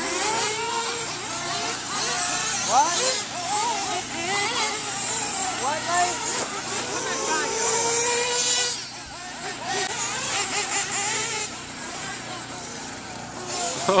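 Radio-controlled short-course trucks' electric motors whining as they race around a dirt track, the pitch rising and falling with the throttle, mixed with people talking nearby.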